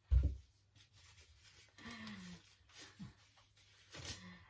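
A single dull, deep thump against the kitchen worktop at the start, followed by a short hummed vocal sound about two seconds in.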